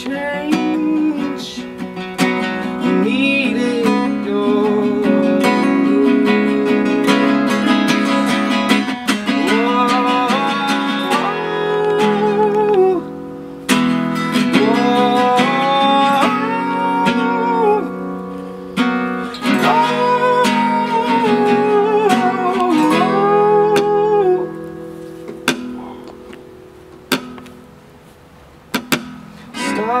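Two acoustic guitars strummed and picked under a man's singing voice in a folk song. About 24 seconds in the singing stops and the guitars thin out to a few sparse plucked notes, then the voice comes back in at the very end.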